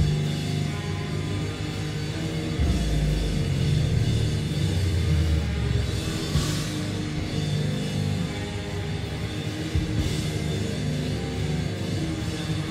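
Live rock band playing a song with electric guitars, bass guitar and drum kit.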